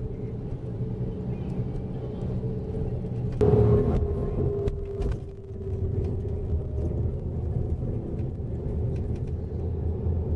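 Coach bus running down the road, heard inside the cabin: a steady engine and tyre rumble. About three and a half seconds in it grows louder for a second or so, with a tone that falls slightly, then settles back.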